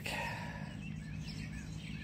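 Faint birds chirping, a series of short high chirps, over a low steady outdoor background hum.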